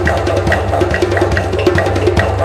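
Background music with a steady drum beat and a sustained bass line.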